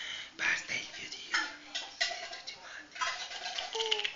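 Baby spoon clicking and scraping against a feeding bowl in several short bursts as a spoonful of baby food is scooped up.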